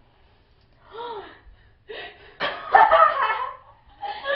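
Two young women laughing. A short gasp-like voiced sound comes about a second in, then a loud burst of laughter in the second half.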